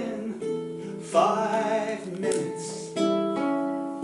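Cutaway nylon-string acoustic guitar played solo: about four chords plucked roughly a second apart, each left to ring and fade.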